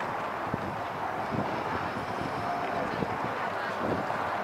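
Steady outdoor background noise with a few faint soft thuds, from a horse cantering on a sand arena.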